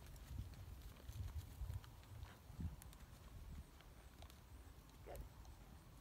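Horse's hooves walking on a soft dirt arena: faint, irregular dull thuds.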